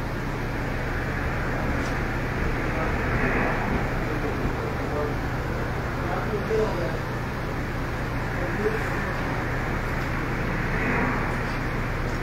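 Steady background noise with a low hum and faint, indistinct voices.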